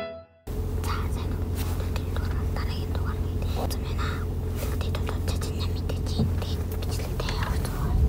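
Close whispering into a small foam-covered microphone over a steady low hum, starting about half a second in.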